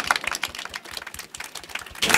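Audience applause: quick scattered claps, loudest at first and thinning out.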